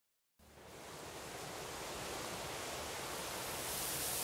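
Steady rushing noise like ocean surf, fading in from silence just under half a second in and swelling slowly.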